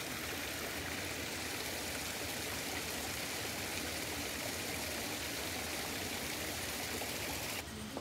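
Water running and splashing steadily into a koi pond. It cuts off suddenly near the end.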